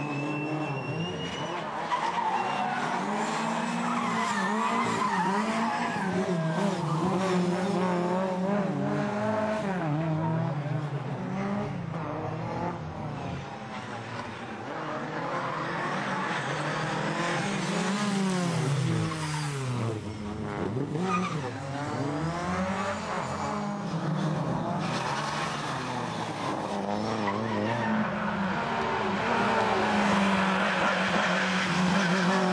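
Rally cars driven hard past on a stage, engines revving up and dropping again and again through gear changes.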